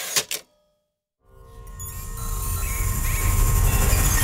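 Outro sting: a brief glitchy burst, then after about a second of silence a dense swell of music with a deep low end that grows steadily louder.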